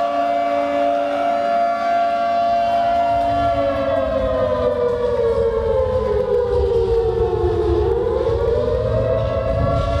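Air-raid-style siren wailing on a steady pitch, then sliding slowly down for a few seconds and winding back up near the end. A low rumble comes in underneath about three seconds in.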